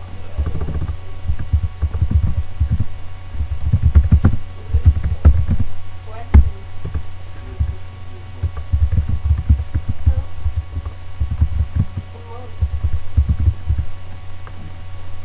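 Computer keyboard typing picked up as irregular low thumps and a few sharper clicks, over a steady low electrical hum.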